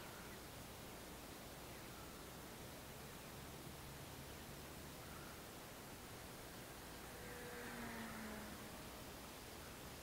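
Faint steady hiss of outdoor background noise, with a faint sound swelling briefly about eight seconds in.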